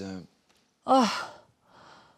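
A man's loud groaning 'Oh!' about a second in, its pitch falling, followed near the end by a faint breathy sigh: sounds of exhaustion.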